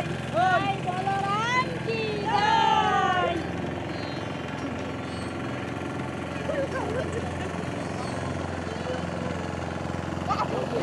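Several people in a river shouting and calling out in high voices that rise and fall, over the first three or four seconds. After that a steady low hum carries on, with only a few faint voices.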